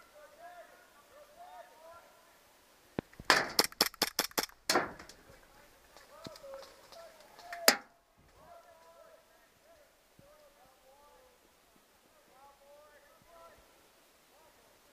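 Airsoft pistol firing a rapid string of about seven sharp shots about three seconds in, then a single shot a few seconds later. Faint distant voices of other players carry on around them.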